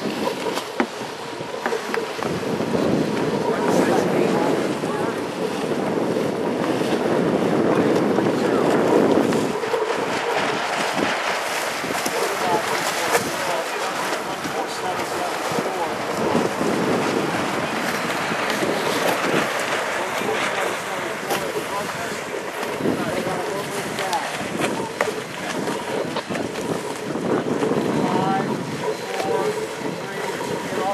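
Wind buffeting the microphone over the wash of choppy open water, a steady rushing noise throughout.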